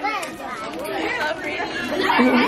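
Chatter of several voices talking over one another, children's voices among them.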